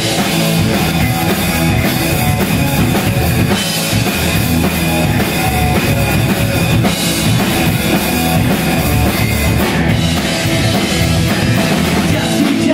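Live rock band playing loud and steady: electric guitars driven over a drum kit with a pounding bass drum.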